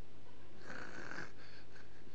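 A short breath exhaled into a handheld microphone, heard as a brief hiss a little over half a second in, over a steady low hum from the sound system.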